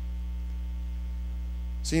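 Steady electrical mains hum with a stack of overtones and no change in level. A man's voice comes back in near the end.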